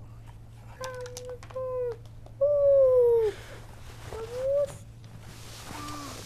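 A cat meowing four times in short succession. The third meow is the longest and loudest and falls in pitch at its end; the last one rises. It is followed by a brief rustling hiss near the end.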